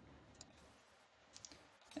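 Faint computer mouse clicks in near silence: one click about half a second in and a couple more around a second and a half in.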